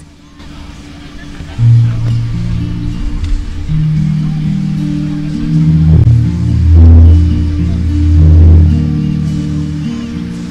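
Acoustic guitar playing the opening of a self-written song: low notes ring on one after another from about a second and a half in.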